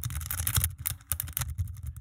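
Steel lock pick raking in and out of the brass pin-tumbler cylinder of a bike U-lock, a fast run of small clicks and scrapes as it rattles over the pins under very light tension.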